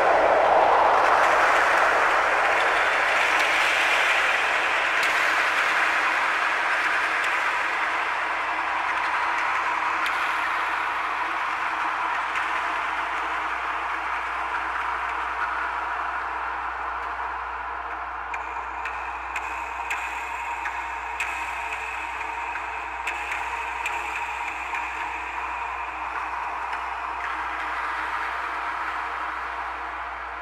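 Electroacoustic sound from a homemade instrument of metal rods and strings on a wooden box, picked up by piezo microphones and processed through a Eurorack modular synthesizer. It is a dense, noisy metallic wash that slowly fades, with a steady ringing tone throughout and higher tones coming in about two-thirds of the way through.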